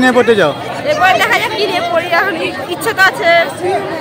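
Speech: a young woman talking into a handheld microphone, with the chatter of people around her.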